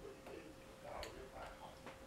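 Faint, irregular mouth clicks and smacks of someone chewing close to the microphone, over a faint steady hum.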